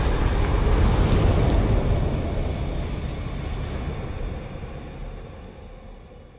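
Intro sound effect for an animated fire logo: a deep rumble with hiss left over from a boom, fading away steadily over several seconds.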